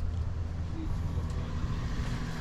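Low, steady engine rumble, like a motor idling somewhere in the pits.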